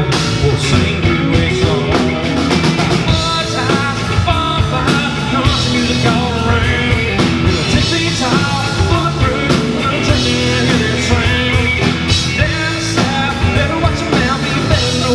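Country rock band playing live, loud and continuous, with acoustic and electric guitars, bass guitar and drum kit.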